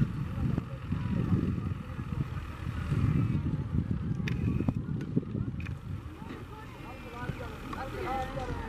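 Low, gusting rumble of wind on the microphone in an open field, with faint short high chirps scattered through it and growing more frequent near the end, and indistinct distant voices.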